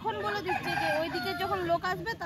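A rooster crowing: one long call of about a second and a half, with a woman's voice underneath.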